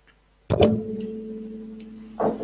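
A single musical note, struck sharply about half a second in and ringing on as it slowly fades.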